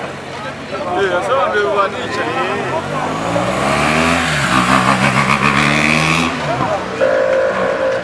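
Large escort motorcycle's engine passing close by, rising in pitch as it approaches and falling as it moves away, with crowd voices along the road. A steady held tone starts about seven seconds in.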